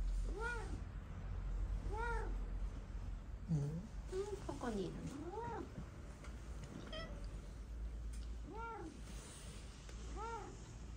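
Domestic cats meowing: about five short meows, each rising and falling in pitch, a couple of seconds apart, with a longer, wavering call a little after the middle. The cats are begging for the dry food being handed out.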